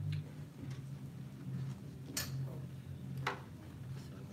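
Printed handouts being handled: a few short, sharp paper rustles, the loudest about two and three seconds in, over a steady low hum.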